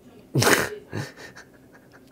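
A man's sudden, loud burst of breath through the mouth and nose, followed about half a second later by a second, shorter and weaker one.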